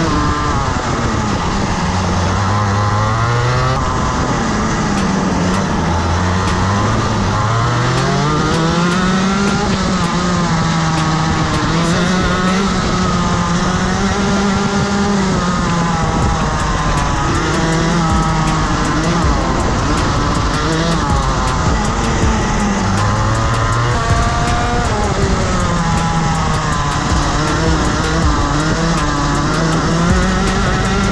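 Rotax Max 125cc two-stroke kart engine heard onboard, its pitch rising and falling over and over as the kart slows for corners and accelerates out again.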